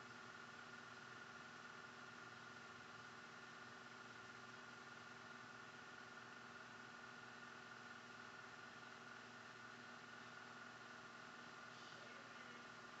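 Near silence: a faint, steady background hum and hiss with no distinct sounds.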